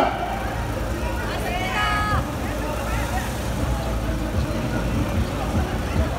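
Steady low rumble of road traffic, with a brief voice calling out about two seconds in.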